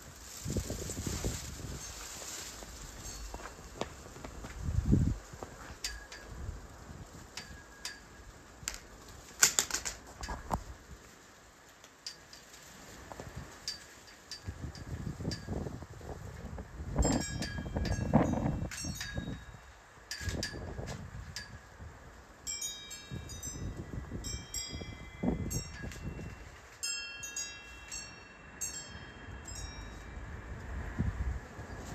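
Gusts of wind buffeting the microphone, with light metallic clinks and chime-like rings scattered through. The ringing notes come thickest in the last third.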